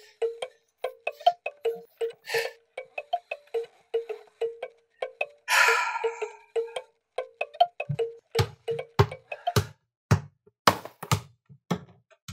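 Hand-cranked music-box mechanism plinking a slow tune of short chiming notes, two to three a second, as its crank is turned. Around the middle there is a breathy noise, and in the last few seconds a run of dull thumps about two a second.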